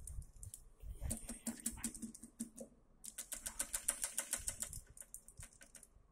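Quick runs of small sharp clicks and taps, densest in the middle at several a second, from hands working the plastic clips and fittings on the dye tubes of a flow-visualization apparatus.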